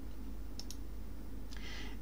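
Two faint computer mouse clicks in quick succession, selecting an item on screen, over a steady low electrical hum.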